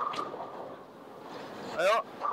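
Bowling pins clattering as a ball strikes them right at the start, the noise falling away into the steady background rumble of the lanes; a short voiced exclamation near the end.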